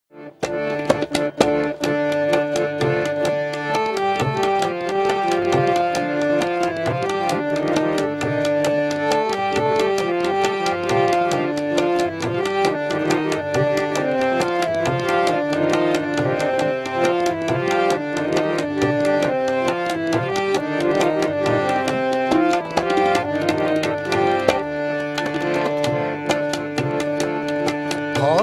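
Instrumental introduction on harmonium and tabla: the harmonium plays a melody over a steady, busy tabla rhythm, opening with a few sharp tabla strokes about half a second in.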